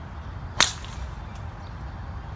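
A golf club striking the ball off the tee: a single loud, sharp crack about half a second in, with a brief ringing tail.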